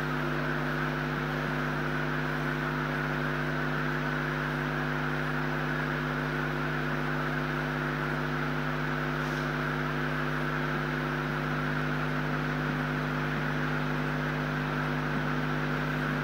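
A steady, unchanging hum made of several fixed tones over a hiss.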